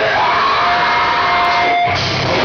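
Live heavy metal band playing loud, distorted electric guitars, with one note held for about a second that breaks off just before the end.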